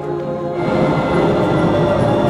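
A rail vehicle running past, its steady rumble swelling about half a second in and holding, under background music.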